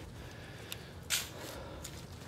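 Quiet outdoor background with faint rustling, a light click, and a short breathy hiss about a second in.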